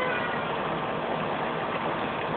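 Steady hiss of water spraying from a pool fountain jet and falling back into the pool.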